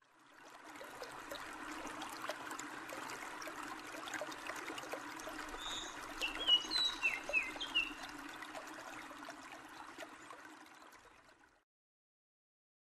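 Trickling, babbling stream water, with a few short falling bird chirps about halfway through; it fades in at the start and fades out near the end.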